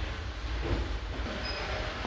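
Shop background noise: a steady low rumble with faint knocks and a brief faint high tone near the end.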